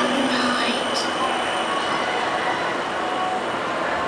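Steady murmur of an outdoor crowd, with many indistinct voices over a continuous noisy background.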